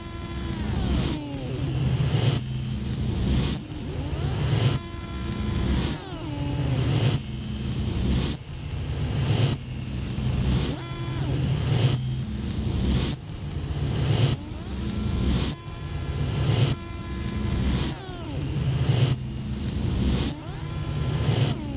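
Looped experimental electronic music, industrial in style. A cycle repeats about every second and a quarter: a low droning pulse swells in loudness, with pitched tones gliding downward over it, then cuts off sharply before the next begins.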